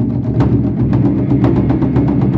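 Japanese taiko drums played by an ensemble: a dense run of rapid stick strikes, several a second, over a continuous deep drum resonance.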